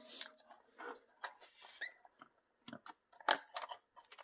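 Scattered light clicks and crackles from handling the small plastic RC crawler and its wiring, with a short hiss in the middle and the sharpest click a little after three seconds in.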